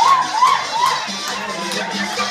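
Someone lets out a string of high, rising-and-falling shouts, about four in the first second, over dance music at a party.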